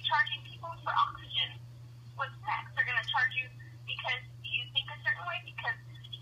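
A person talking over a telephone line, the voice thin and narrow, with a steady low hum beneath it.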